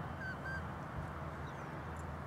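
Two faint, short bird calls over a steady low outdoor rumble.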